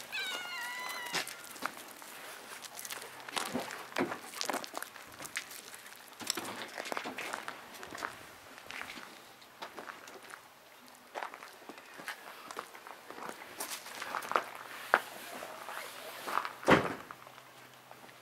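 Scattered crunching steps on gravel as a golden retriever and cats move about, with a short high-pitched cry in the first second. One louder thump comes near the end.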